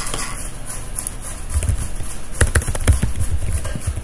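Computer keyboard typing: a quick run of key clicks starting about a second and a half in.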